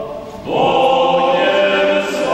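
Small male vocal ensemble singing a cappella in a church: a phrase dies away briefly, and a new sustained chord enters about half a second in.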